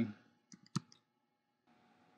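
Computer keyboard keystrokes: a few quick, quiet key clicks close together, the last one the loudest.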